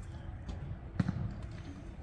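Two thuds of a football being played, a faint one about half a second in and a louder one about a second in, over a low steady rumble.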